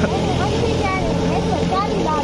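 An engine running steadily, a constant low drone that does not change in pitch, with faint voices in the background.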